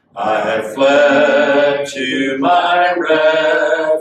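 A man singing a hymn slowly, holding long notes, with a brief break about two seconds in.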